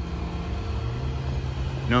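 A steady low rumble with a hum running under it, the sound of an engine idling. A voice starts right at the end.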